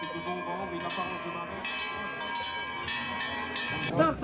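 Many cowbells ringing together, with repeated metallic strikes and long ringing tones, over a low murmur of crowd voices.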